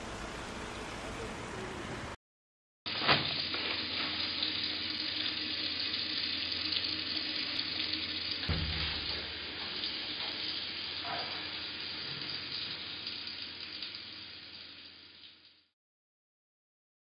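Tap water running steadily into a washbasin, starting about three seconds in after a brief silence and fading out near the end, with a single low knock partway through.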